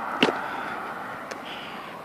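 Steady background road-traffic noise that slowly fades, with one sharp click about a quarter of a second in.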